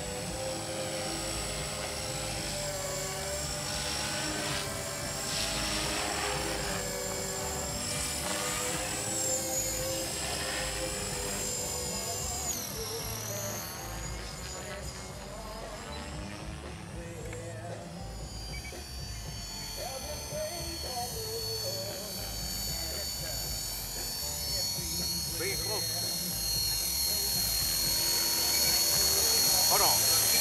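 Small electric RC helicopter (T-Rex 450 clone) flying 3D manoeuvres: a high motor and rotor whine that keeps rising and falling in pitch, louder near the end as it comes close.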